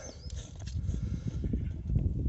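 Plastic oil filter housing cap on a Mercedes E220 engine being unscrewed by hand, with faint rubbing and a few light clicks under a steady low rumble.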